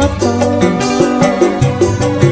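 Dangdut koplo music playing, with a fast, steady drum beat over bass and a melody line.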